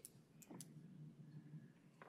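Near silence: faint room tone with three small clicks in the first second.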